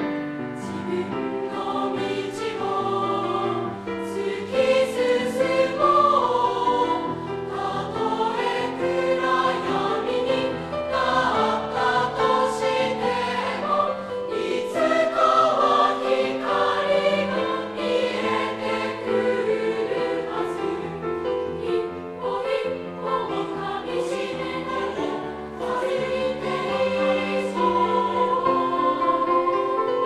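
School choir of young voices singing in Japanese, accompanied by a grand piano.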